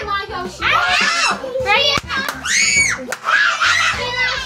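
Several children talking and squealing excitedly while they play, with a long high-pitched squeal a little past halfway. A sharp click is heard about two seconds in.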